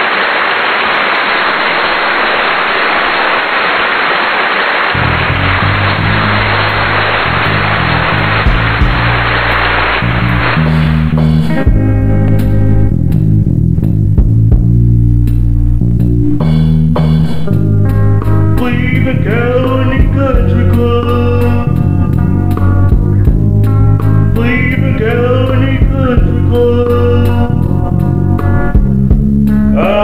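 A steady hiss fills the first ten seconds, and a bass line comes in under it about five seconds in. The hiss then stops and a band song with bass and electric guitar plays, with a voice singing from about eighteen seconds in.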